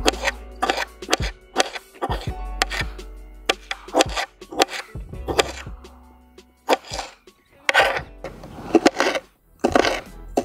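Knife chopping tomato on a hard cutting board: sharp, irregular knocks about two a second, over background music.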